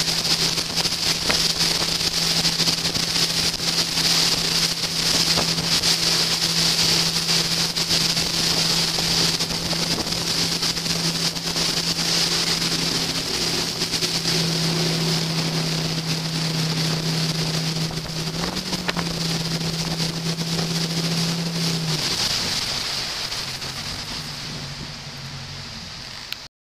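Tow boat's engine running steadily under way, with water rushing and wind buffeting the microphone. Near the end the engine tone drops away and the sound fades as the boat slows after the rider falls.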